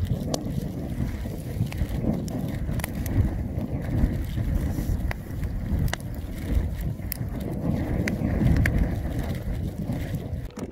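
Jetboil camping stove's gas burner running steadily, with wind rumbling on the microphone.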